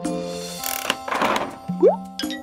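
Children's background music with cartoon sound effects of a gumball machine's knob being turned: a sharp clunk just before the middle, a short rattling noise, then a quick rising glide near the end.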